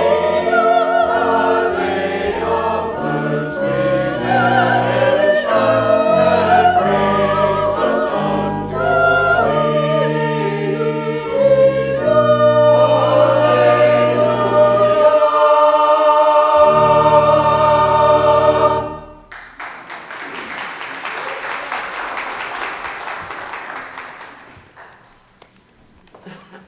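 A mixed church choir sings an anthem over sustained low organ notes, ending on a long held chord about two-thirds of the way through. Then comes a few seconds of dense clattering, like applause, which fades away.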